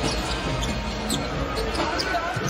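A basketball being dribbled on a hardwood court, under steady arena background noise and faint arena music.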